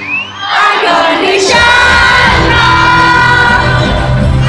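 A live pop concert heard from the audience: a female lead singer's voice sweeps upward and holds long sustained notes. The full band, with heavy drums and bass, comes back in about a second and a half in.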